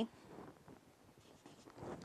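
Marker pen writing on a whiteboard, heard as faint short strokes, a little stronger about half a second in and again near the end.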